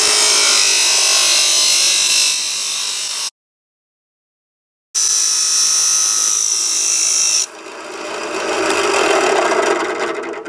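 Abrasive cut-off wheel on a drill press grinding slots into a thin stainless steel can, a loud, harsh, high-pitched grind. The sound cuts out completely for about a second and a half midway, resumes with a steady high whine, then drops off about three quarters of the way through and swells again near the end.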